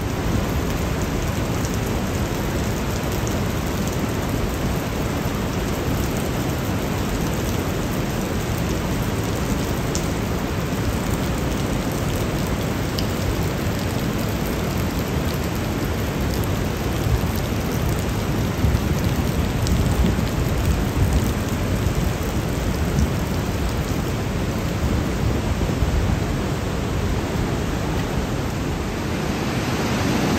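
Steady roar of a glacial mountain torrent, the Großarler Ache, rushing as whitewater and waterfalls through a narrow rock gorge, swelling slightly past the middle.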